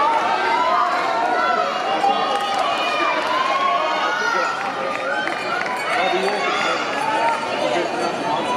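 Several people talking at once: indistinct, overlapping chatter with no clear words.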